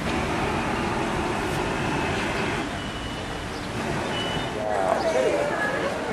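Street ambience: steady traffic noise with people talking in the background, a voice rising a little past the middle.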